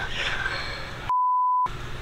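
An edited-in censor bleep: a single steady, high-pitched beep lasting about half a second, starting about a second in, with the rest of the sound cut to silence beneath it, the usual way a swear word is masked. Low workshop room sound surrounds it.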